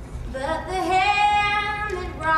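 Female voices singing long held notes, coming in about a third of a second in and pausing briefly near the end.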